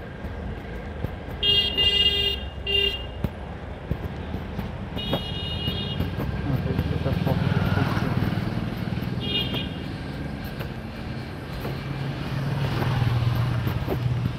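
Street traffic with vehicle horns honking: two short blasts about two seconds in, another around five seconds and a brief one near nine seconds. A motorcycle engine swells as it passes close by about eight seconds in, and another engine rumbles near the end.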